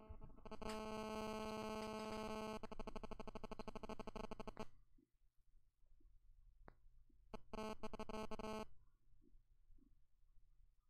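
Two bursts of a buzzing, synthesizer-like electronic tone. The first lasts about four seconds and turns to a rougher, faster buzz partway through. The second is short, near the end, with a few faint clicks between them.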